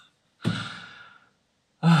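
A man's sigh: one breathy exhale about half a second in that trails off. A spoken word begins near the end.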